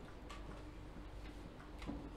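Faint, irregular small clicks and ticks over quiet room tone.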